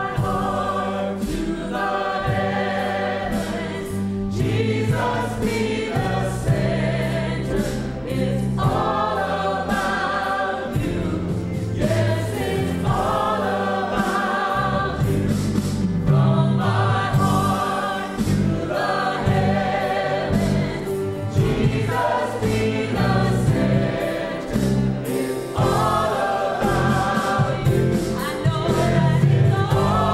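A live contemporary Christian worship song. A woman sings lead, a choir sings along in phrases a couple of seconds long, and drums and keyboard accompany them.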